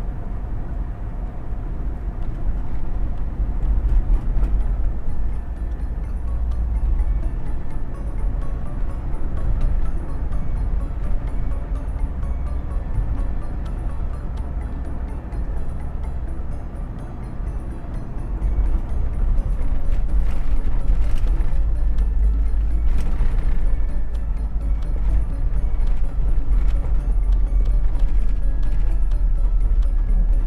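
Steady low road and engine rumble heard from inside a moving car, with background music over it; the rumble grows a little louder past the middle.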